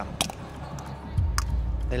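Two sharp plastic clicks about a second apart as a plastic draw ball is opened by hand.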